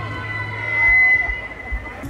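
Live hip-hop concert sound through a festival PA: a sustained high, siren-like tone swells to its loudest about a second in, over crowd voices, while the beat's deep bass drops away early on.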